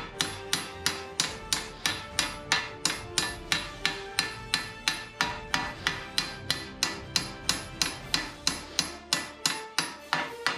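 Hand hammer striking a sheet-steel helmet plate held on a metal stake, steady blows at about three a second, each with a short metallic ring, flattening the back of the plate.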